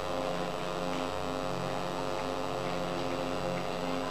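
Soft held keyboard chord, a steady drone of sustained notes with no change in pitch.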